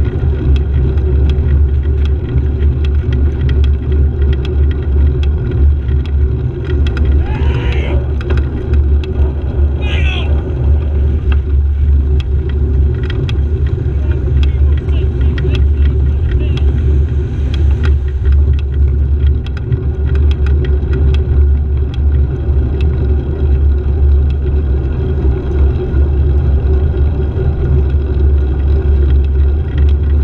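Steady, loud low rumble of wind and road noise on a camera riding in wet traffic. About seven and ten seconds in come two brief wavering, rising-and-falling higher sounds.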